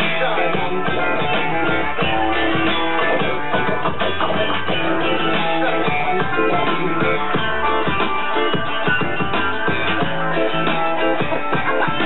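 Live ska-rock band playing loud and steady: strummed electric guitar over a regular beat.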